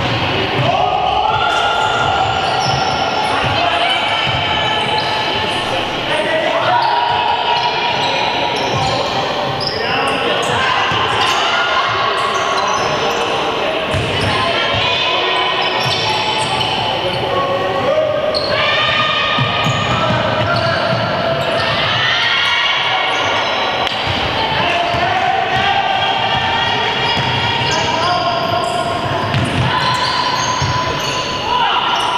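Basketball being dribbled and bounced on a wooden court in a large sports hall, with players' shoes squeaking as they run and cut, and players calling out.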